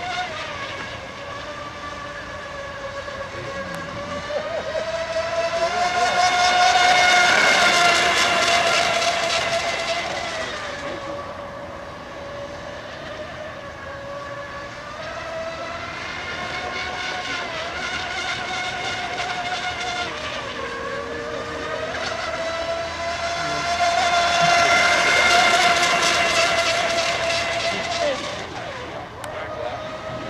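Fast electric RC model race boat running at speed, a high-pitched motor and propeller whine. It swells twice as the boat passes close, about 7 seconds in and again around 25 seconds, with its pitch dipping and rising between passes.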